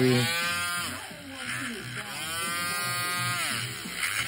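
Electric rotary nail file with a sanding band grinding a thick toenail, its motor whine dipping and rising in pitch twice as it is pressed on and eased off the nail.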